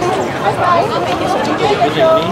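Chatter of several people's voices talking over one another, with no one voice standing out.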